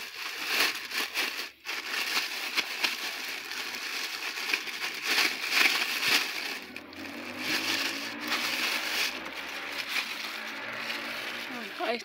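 Plastic bag rustling and crinkling as it is turned over and shaken to empty worms in compost into a plastic cooler, with a crackle of many sharp little strokes.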